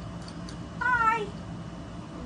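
A single high-pitched, wavering call lasting about half a second, a little under a second in, over a faint steady hum.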